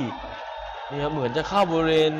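A male commentator's voice: a few words about halfway through, then one long held call near the end.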